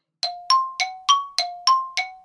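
Intro sting: a quick run of bell-like dings alternating between a lower and a higher note, about three a second, each ringing briefly before the next strike.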